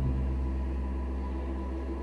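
Low, sustained drone of background film-score music, a chord of deep tones that holds and slowly fades after a sudden hit.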